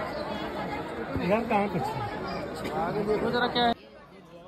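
Crowd chatter: many voices talking over one another. It cuts off abruptly near the end, leaving a much quieter background.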